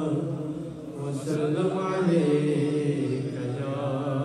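A man reciting an Urdu naat, unaccompanied devotional singing in long, wavering held notes. The line breaks off briefly about a second in, then resumes.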